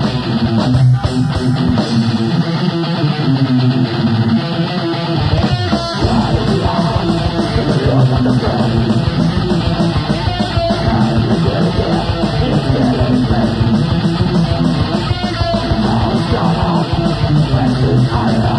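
A live rock band playing, led by an electric guitar riff, with the bass and drums filling out the low end about six seconds in.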